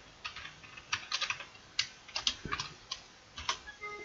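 Computer keyboard typing: irregular key clicks, a few a second. Just before the end comes a short Windows alert chime as an error dialog opens, signalling that the formula has too few arguments.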